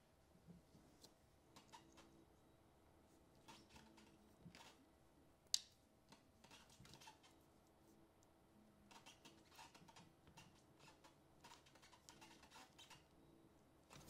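Near silence with faint, scattered clicks of small plastic and metal parts being handled: a cassette-deck pinch roller, its metal shaft and plastic bracket taken apart and fitted back together by hand. One sharper click comes about five and a half seconds in.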